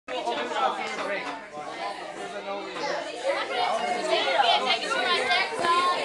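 Several young voices chattering at once, talking over one another with no single clear speaker.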